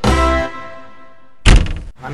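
Music ends on a held chord that rings and fades, then about a second and a half in comes a single loud thunk of a door slamming shut.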